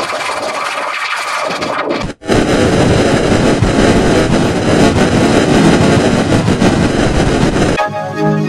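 Heavily effects-distorted logo jingle audio: a harsh, noisy wash that cuts out suddenly about two seconds in, then comes back louder and denser until it stops just before the end.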